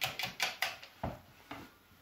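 Wire whisk beating eggs in a plastic bowl, a rapid clatter of about six strokes a second that stops within the first second. Two lone knocks follow.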